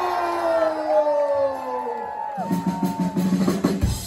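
Live ska band starting a song: held, slowly falling tones give way, about two and a half seconds in, to a fast, choppy guitar rhythm, with the drums and bass coming in near the end.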